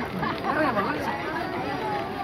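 Crowd chatter: many people talking at once, no single voice standing out.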